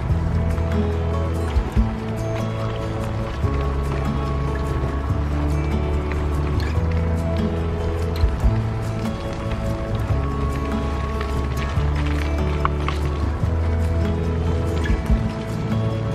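Background music with held bass notes that change every second or two.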